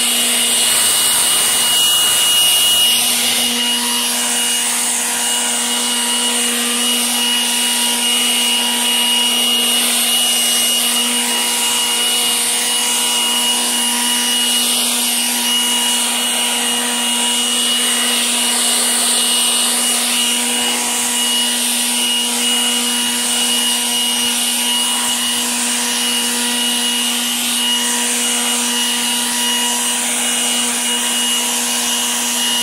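Milwaukee M18 FUEL 2724-20 brushless cordless leaf blower running steadily at full throttle on its high-speed setting: a rush of air with a steady whine over it.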